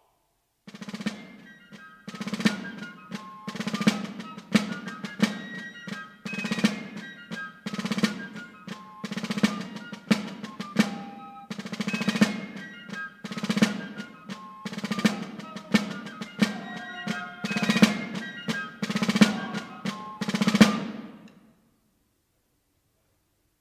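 Military marching drums, snare and bass, beating a steady march cadence with a high melody line over them, typical of fife and drum music. It starts about a second in and stops just before the end.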